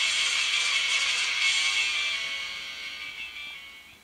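Music soundtrack of a Muvee Studio slideshow playing from the LG Viewty KU990 mobile phone's small speaker, thin with little bass, fading out over the last two seconds as the preview ends.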